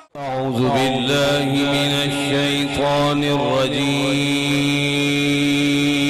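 A man's voice chanting Quranic recitation into a microphone, in long held notes. The pitch is steady, with melodic turns in the first few seconds.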